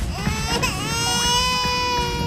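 Cartoon baby crying: one long, high wail that rises at the start and is then held steady.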